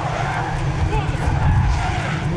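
Engines of a full field of Super 7 race cars running together as the pack accelerates away from the start, a dense low rumble, with a voice faintly over it.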